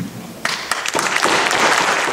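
Audience applause, a few claps about half a second in that quickly fill out into steady clapping from many hands.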